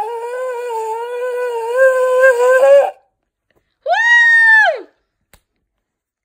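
A child blowing a small ram's-horn shofar: one long, steady, slightly wavering blast that stops about three seconds in. About a second later comes a shorter, higher horn note that slides up at its start and drops away at its end.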